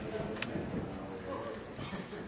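A horse's hoofbeats loping on arena dirt, with people's voices in the background and one sharp knock about half a second in.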